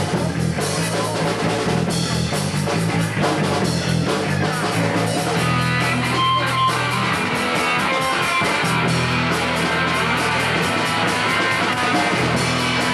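Live cold wave / punk band playing: electric guitar over a steady bass line and drum kit, running without a break.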